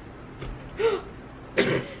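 A woman's short, faint voiced sound about a second in, then a sharp gasp near the end, in dismay at having cut into the gelatin bottle.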